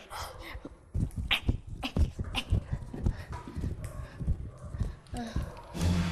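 A jump rope slapping a tiled floor and bare feet landing in an uneven rhythm of soft knocks, a few a second, with breathless grunts and panting from the tired skipper.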